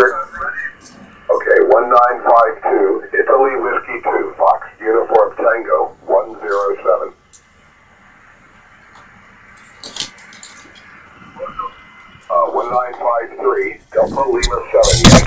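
A distant operator's voice received on single sideband through an Icom IC-7851 transceiver on the 20-metre band. It sounds thin and cut off at the top, with two stretches of talk and a faint static hiss in the gap between them.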